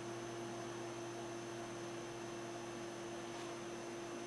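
Steady electrical hum with a faint hiss, unchanging throughout.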